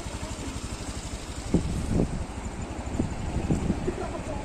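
Motorcycle engine idling steadily, with a few brief faint sounds over it around the middle.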